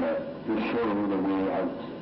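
A man's voice from a film soundtrack playing on a television, in pitched, drawn-out phrases with a short break early on, dropping away shortly before the end.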